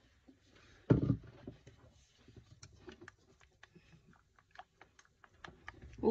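Wooden chopsticks clicking and scraping against a stainless steel bowl as they stir leftover rice in hot water, with a single thump about a second in.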